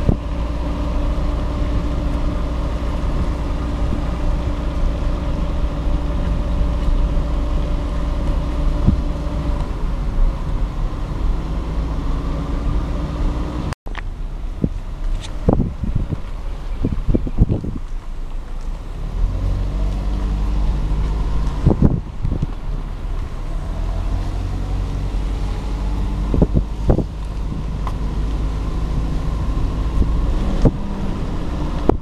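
Car driving slowly, heard from inside: a steady low engine and road rumble with a faint hum. Halfway through the sound cuts out for an instant, after which there are several short knocks and the engine note rises a little a few times.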